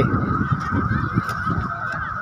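Wind buffeting the microphone as a low, uneven rumble, over a constant high-pitched drone.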